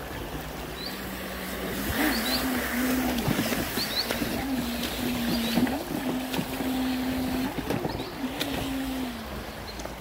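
Motor and jet pump of a Thrasher RC jetboat, whining at full run. The pitch dips and rises again and again as the throttle is worked. It swells about two seconds in and eases off near the end.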